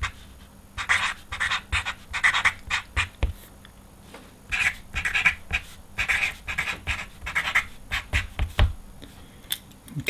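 Wide-tip Uni Paint marker writing on black paper: a run of short scratchy strokes as letters are written, a pause of about a second, then a second run of strokes.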